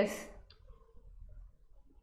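The end of a spoken word trailing off, then near-quiet room tone with a faint click about half a second in.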